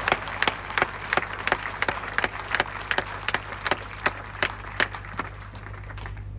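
Tennis spectators applauding at the end of a point. One clapper close to the microphone claps evenly, about three times a second, over the wider applause and stops about five seconds in.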